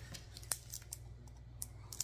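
Scissors being handled, giving a few light clicks and one sharper click about half a second in.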